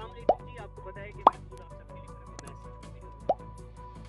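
Quiet outro background music of steady held tones, with three short rising 'bloop' pop sound effects of an on-screen notification-bell animation: one near the start, one about a second in, and one near the end.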